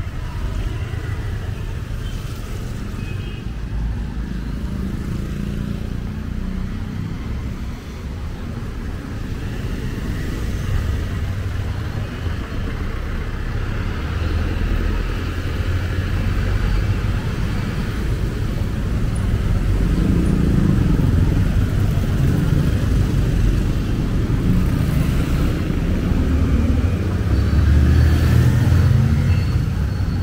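Street traffic: motorcycles and cars running past on the road, a steady engine and tyre rumble that grows louder in the second half.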